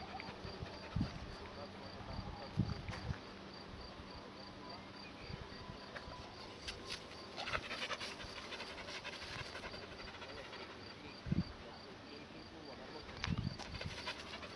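A medium-sized dog panting steadily through an open mouth, most strongly about halfway through. Behind it, an insect chirps in an even, high-pitched pulse, with a few low thumps.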